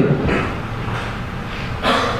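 A speaker's sharp intake of breath into a podium microphone near the end, after a pause that carries only a low steady hum and a faint earlier breath.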